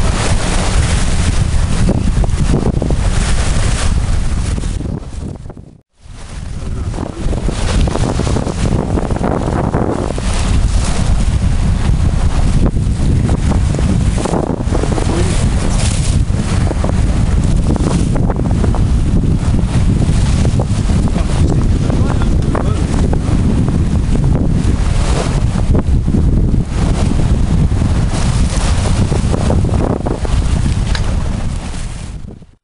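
Strong wind buffeting the microphone over the rush of sea water along a sailing yacht's hull as it moves through choppy water. The sound dips sharply and briefly about six seconds in.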